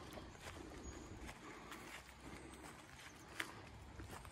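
Faint footsteps on wet grass, with one sharper tick about three and a half seconds in.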